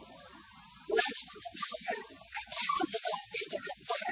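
Indistinct, muffled voice on a low-fidelity tape recording.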